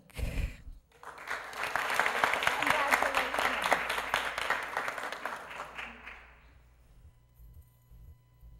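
Audience applauding, starting about a second in, swelling, then dying away near the end.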